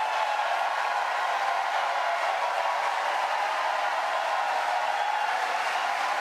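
Debate audience noise: a steady wash of crowd sound, taken for applause and cheering, loud enough to cover the moderator's voice.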